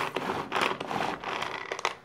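Hand-pulled cord food chopper being worked: the cord zipping out and rewinding in quick repeated pulls, the blades whirring and rattling the food inside the plastic bowl.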